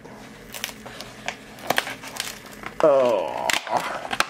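Plastic blister packaging of a boxed diecast car being handled and opened: scattered crinkles and sharp clicks, with a short bit of voice about three seconds in.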